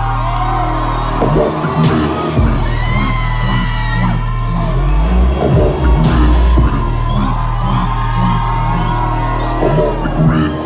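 Live hip-hop music played loud through a club PA and heard from within the crowd: a heavy, steady bass under a repeating beat, with scattered shouts and whoops from the audience.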